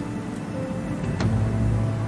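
Background music score of long held notes over a steady low drone; the drone grows louder a little after a second in.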